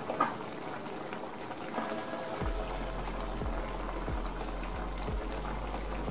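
Soup broth with rice vermicelli bubbling at a boil in a frying pan, with a few soft knocks as wontons are put in.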